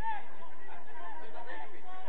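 Indistinct, overlapping voices of several people talking and calling out on and around a football pitch, with no single clear speaker.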